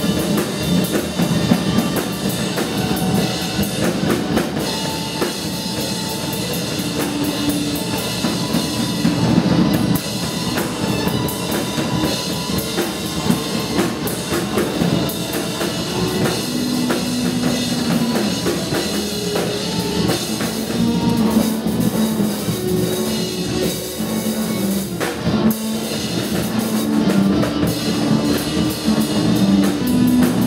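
Live band playing rock music: a drum kit hit steadily under a guitar, with held notes coming in more often from about halfway through.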